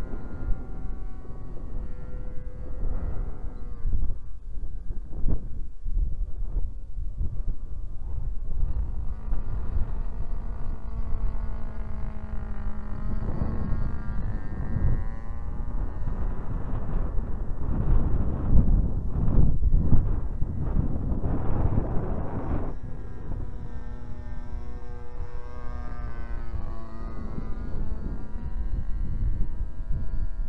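Engine of a large radio-controlled Ryan STA scale model plane in flight, a droning note that rises and falls in pitch as the plane moves about and the throttle changes. Wind rumbles on the microphone throughout and gusts loudest a little past the middle.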